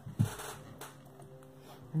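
A short thump and a brief rustle of paper card being handled, followed by a faint steady hum at a few pitches.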